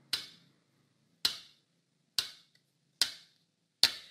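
Five sharp clicks spaced about a second apart, each dying away quickly, with silence between them.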